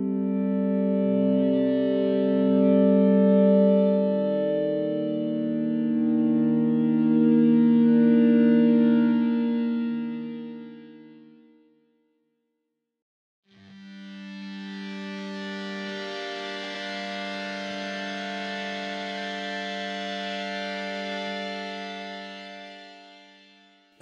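Sampled electric guitar feedback tones from a software instrument, played as a sustained chord on a keyboard. The chord swells in, holds and fades out about twelve seconds in. After a short silence a second, different feedback sound starts, holds steady and fades near the end.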